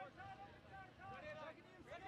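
Faint, distant voices of players on the field and sideline talking and calling out.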